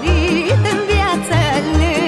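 Recorded Romanian folk song: a woman singing with a strong, ornamented vibrato over a folk band, with a bass pulsing steadily about two to three times a second.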